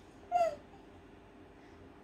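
Baby's short high-pitched vocal sound, one brief call that dips slightly in pitch about half a second in, over quiet room tone.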